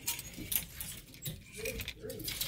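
Plastic clothes hangers clicking and scraping along a metal clothing rail as garments are pushed aside one after another, a few separate clacks over the two seconds.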